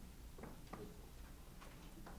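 Very faint room tone with a low steady hum and a few soft, scattered clicks and taps, like small handling noises at a lectern.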